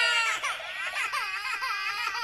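A toddler crying: a loud, high wail that wavers up and down in short rises and falls.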